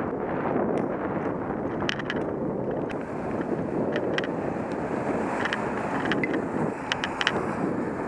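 Wind rushing over the microphone of a bicycle-mounted camera while riding, a steady low rush, with scattered light clicks and rattles throughout.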